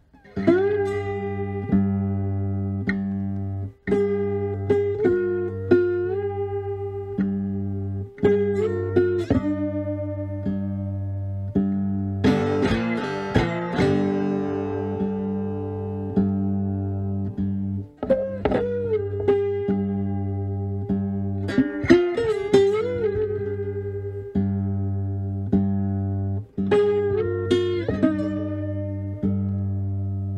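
Fretless three-string cigar box guitar fingerpicked in open G: a steady thumbed bass line on the low string under a melody picked on the upper strings, some notes sliding in pitch.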